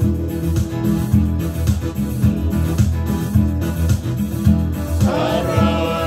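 Live electronic keyboard and strummed acoustic guitar playing a Fijian song, mostly instrumental, with a steady strummed pulse. A man's singing voice comes back in about five seconds in.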